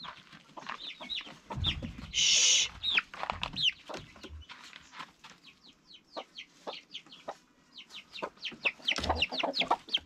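Chicks peeping rapidly and continuously, each peep a short high call sliding downward, with a brief loud burst of rustling about two seconds in and a few low thumps.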